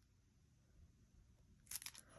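Near silence, then near the end a brief crinkly rustle of hands handling small paper craft pieces and a plastic glue bottle.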